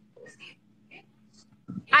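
Mostly quiet, with a faint low hum and a few short, soft vocal sounds. Near the end a girl's voice comes in loudly over the video-call link as she starts to speak.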